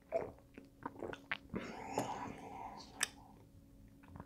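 Faint mouth sounds of a man sipping beer from a glass and tasting it: small clicks and lip smacks, a soft breathy stretch about halfway through, and one sharper click near the end.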